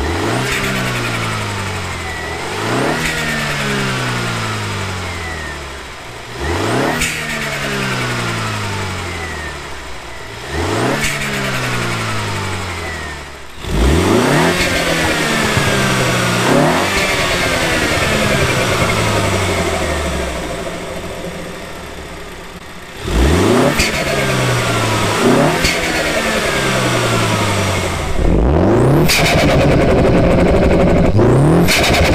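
Mini F56 John Cooper Works 2.0-litre turbocharged four-cylinder revved repeatedly in short throttle blips, each rising sharply and falling back to idle, heard from a microphone in the engine bay. Partway through, the intake changes from the standard airbox to an Eventuri carbon-fibre intake, and the blips get louder.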